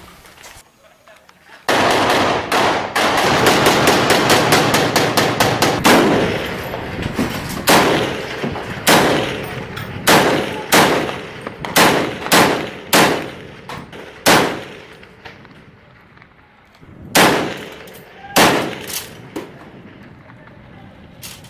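Automatic gunfire. A long rapid burst starts about two seconds in, followed by single shots and short bursts at irregular spacing, then a lull and two more short bursts near the end.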